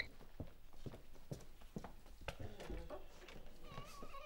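Faint footsteps on a hard floor: a handful of irregular, soft knocks as someone walks to the door.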